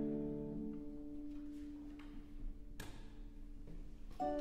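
A violin and harp chord dying away into a pause in the music, its last low note ringing on and fading over the first few seconds. A single faint click comes about three quarters of the way through the quiet.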